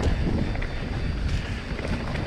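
Santa Cruz Nomad full-suspension mountain bike riding fast down a dirt singletrack: steady wind rush on the microphone over the rolling of tyres on hardpack dirt and leaves, with small rattles from the bike.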